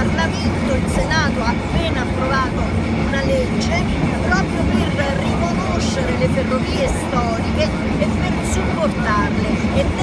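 A woman talking over the steady low rumble of a moving railway carriage running along the track.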